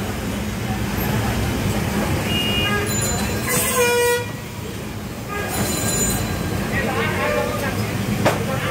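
Busy street background of voices and traffic, with a short vehicle horn toot about halfway through.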